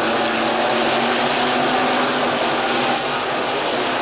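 A pack of IMCA Sport Modified dirt-track race cars running at racing speed, their engines blending into one steady noise with a faint held hum.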